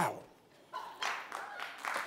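Studio audience beginning to applaud: scattered claps start about a second in and build toward full applause, after a man's brief "wow" at the start.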